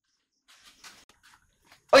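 A man's voice calling out loudly near the end, after about a second of faint, brief sounds.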